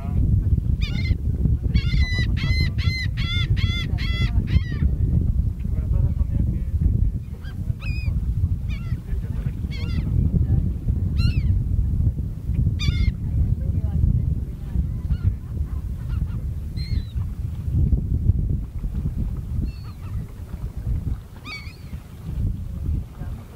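Gulls calling in short, scattered cries, with a quick run of about a dozen calls a couple of seconds in. They sit over a steady low rumble, the loudest sound throughout.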